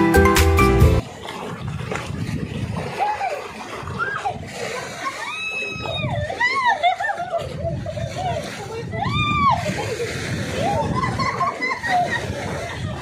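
Sea water sloshing and splashing around people bathing in the shallows, with high-pitched voices calling out several times. Music plays for about the first second and then cuts off abruptly.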